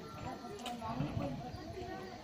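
Indistinct voices of people talking in the background, with a couple of light knocks.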